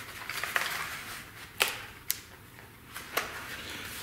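A small cardboard box of copper cable lugs being handled and closed: cardboard rustling with small metallic clinks from the lugs inside, and two sharper clicks, one about a second and a half in and one about three seconds in.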